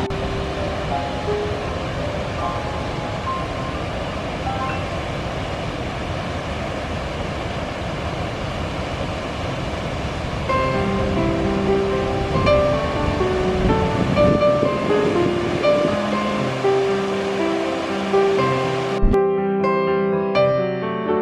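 Steady rush of the Deerfield River's waterfall at the glacial potholes, mixed with background music that grows louder about halfway through. The water sound cuts off suddenly near the end, leaving only the music.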